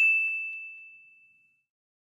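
A single bright ding sound effect, one bell-like chime struck right at the start and ringing away to nothing over about a second and a half.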